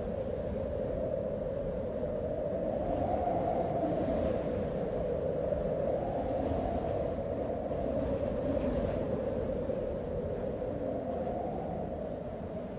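A continuous drone with a slowly wavering pitch over a low rumble.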